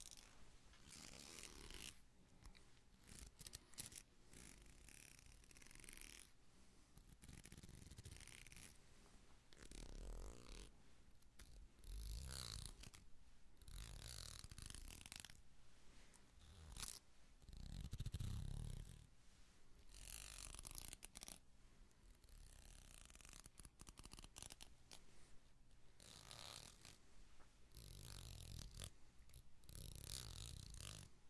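Faint, close-up ASMR trigger sounds on a binaural microphone: a plastic comb and other small objects scratched and brushed in short spells with pauses between, and a louder soft rumbling handling noise well past halfway.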